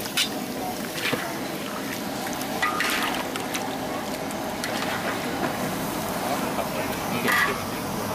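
Chicken pieces frying in a large steel wok, a steady sizzle, while metal spatulas scrape and clink against the pan as the chicken is stirred.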